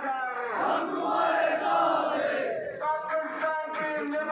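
Protesters shouting a slogan together. A single leading voice calls out at the start and again near the end, and the crowd answers in unison in between.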